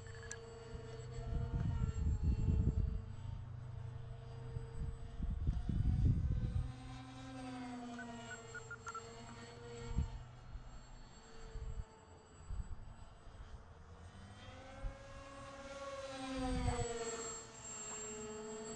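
Twin electric brushless motors and propellers of an RC flying wing (Turnigy 2826 2200 kV motors on a Ritewing Nano Drak 28) whining as it flies around overhead, the pitch sliding up and down with throttle and passes. Two bursts of low buffeting on the microphone, about two seconds in and again about six seconds in, are the loudest sounds.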